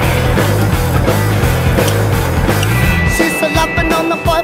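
Rock music soundtrack with distorted guitar over a steady bass line.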